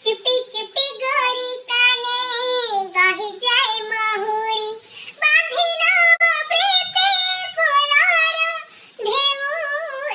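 A high-pitched voice singing a tune in held, wavering notes, with short breaks about halfway through and near the end.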